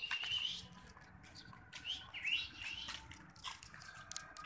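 A bird chirping: a few short chirps at the start and a quick run of falling chirps around two seconds in, with scattered light clicks.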